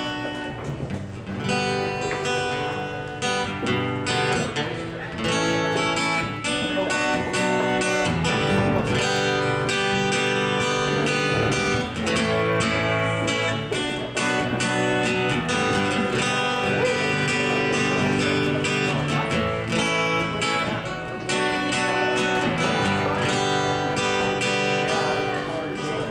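Acoustic guitar strummed in steady chords, the instrumental intro of a song.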